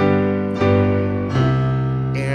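Casio Privia PX-350 digital piano playing held chords: a new chord is struck at the start, another about half a second in and a third near a second and a half.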